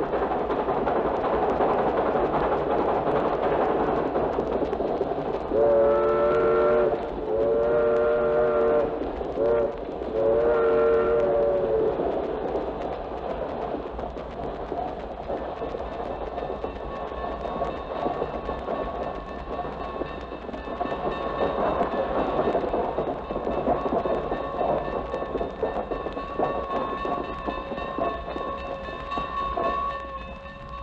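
Recorded train sound effects from a vinyl LP: a passing train's steady rumble, with four chord-like horn blasts a few seconds in, long, long, short, long, the grade-crossing signal. After them the train is quieter, and a steady high tone comes in about halfway and holds.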